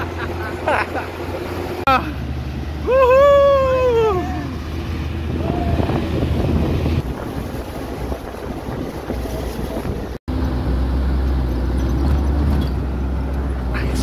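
Open tour jeep's engine running with wind noise as it drives, with a person's long shout that rises and falls in pitch about three seconds in, the loudest sound. A brief dropout about ten seconds in, after which the engine drone goes on.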